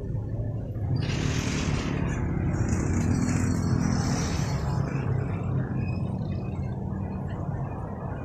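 Steady low rumble of a motor vehicle engine running nearby, with a droning hum that is strongest through the middle few seconds.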